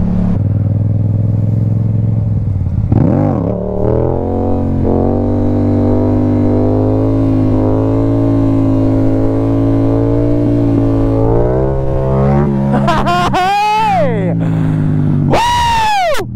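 Motorcycle engine under way, holding a steady pitch for several seconds, then revved up and down a few times, with a sharp rev and drop just before the end.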